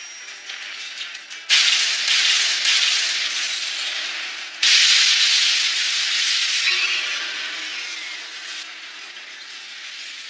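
Animated sound effect of a crackling dark-energy blast: a sudden loud rush of noise about a second and a half in, a second one about four and a half seconds in, each fading away slowly.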